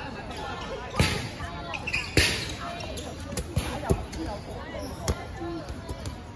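Dodgeballs striking during play: a string of sharp smacks, the two loudest about one and two seconds in, with smaller hits later. Players' voices call out throughout.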